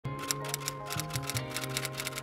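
A typing sound effect, a quick, even run of key clicks about six or seven a second, over background music with low sustained notes.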